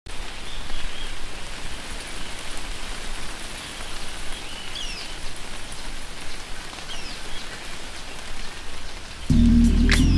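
Steady rain, with a few faint short chirps, until music with deep bass notes comes in suddenly near the end.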